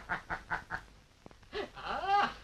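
A person laughing in a quick run of short bursts that dies away about a second in, then a voice sliding upward in pitch near the end.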